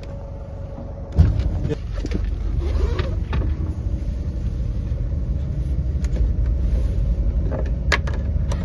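Low, steady rumble of a boat's engine running, with a sudden thump about a second in, after which the rumble is louder; light knocks and clicks of handling sit on top.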